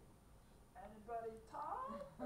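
A woman's voice, high and gliding in pitch, starting about three quarters of a second in after a quiet start.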